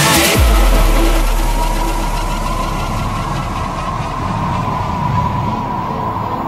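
Vinahouse dance-music mix going into a breakdown: the drums stop about half a second in, leaving a long held deep bass note and a steady synth tone over a fading wash of noise, with no beat.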